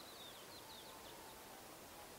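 Faint chirps and twitters of small birds over a quiet, steady outdoor hiss, the chirping mostly in the first second.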